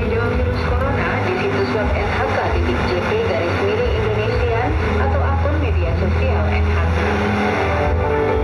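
A shortwave radio broadcast heard from the receiver's speaker: a news reader's voice made indistinct by static and fading, over a steady low background.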